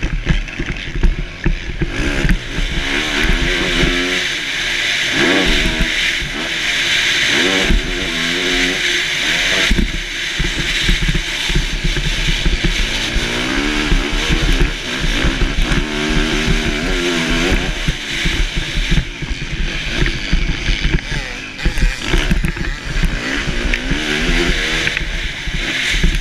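Motocross dirt bike engine revving up and falling back again and again as the throttle is worked through corners and straights, heard from the rider's helmet.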